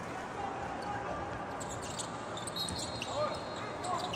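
Hall sound of a basketball court between plays: a steady low background of voices in the gym, with a short high squeak and players' calls in the last second or so.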